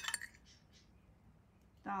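A metal fork clinks a few times against a ceramic plate as it cuts a piece off a slice of moist cake, right at the start.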